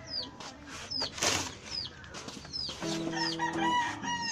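Acoustic guitar starting to be plucked about three seconds in, a few low notes ringing. Behind it a bird peeps over and over, short high falling chirps about twice a second, and there is a brief rustle about a second in.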